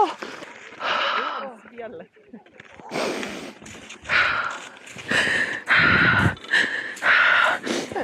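A person breathing heavily and unevenly through the mouth, about six deep breaths a second or so apart, calming down after a brief anxiety attack.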